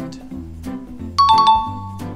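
Background music with a two-note chime sound effect about a second in, a higher tone followed right after by a lower one, both ringing on. The chime is the loudest sound.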